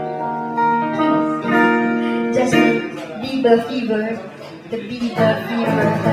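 Live acoustic guitars and a woman's voice hold long sustained notes for the first couple of seconds, then the song breaks up into talking over loose guitar playing.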